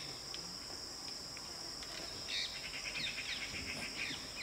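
Insects shrilling in a steady high drone, with bird calls over it: a short rapid trill about two and a half seconds in and quick falling chirps near the end.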